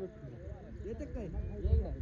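Men's voices talking and calling, several overlapping, with a low rumble on the microphone near the end.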